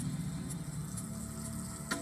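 A steady low hum with a few faint ticks, heard through a television's speaker.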